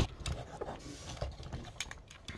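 Light clicks and rubbing of hard plastic parts as a Transformers Siege Megatron action figure is handled and its joints adjusted, with a sharper click at the very start.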